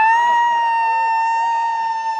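A single high-pitched voice holding one long, steady note, sliding up into it at the start.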